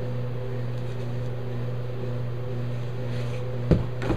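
Steady low hum, a few evenly spaced tones held level throughout, with one short knock near the end.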